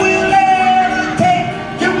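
A man singing long held high notes into a handheld microphone, the note dropping slightly a little over a second in.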